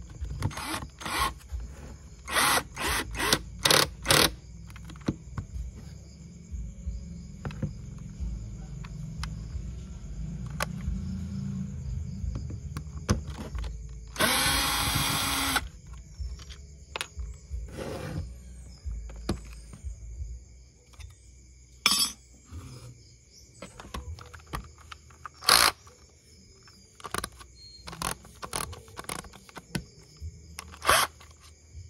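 Cordless drill driving screws into a plastic battery-pack casing: a few short bursts of the motor, then one longer steady run about fourteen seconds in. Sharp clicks and knocks of handling follow.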